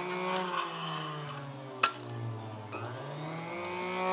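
Small electric saw cutting a strip of lead came to length. Its motor hum sags in pitch and recovers, with a sharp click a little under two seconds in.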